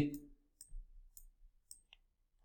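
A few faint computer mouse clicks, three or four spread over two seconds.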